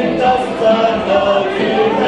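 Karaoke: a man singing a Cantonese pop song into a microphone over the song's backing track, with long held notes.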